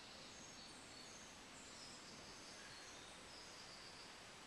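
Near silence: room hiss with faint, short, high chirps from distant birds.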